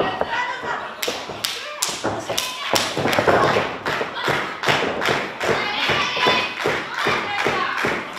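Steady rhythmic hand-clapping, about three claps a second, with voices shouting over it.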